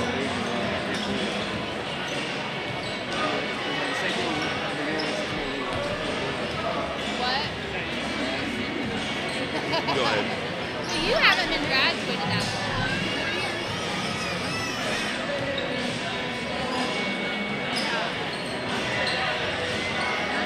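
Several basketballs bouncing on a hardwood gym floor during warm-ups, with many short strikes throughout, over crowd chatter echoing in a large gym. A louder squeak stands out about eleven seconds in.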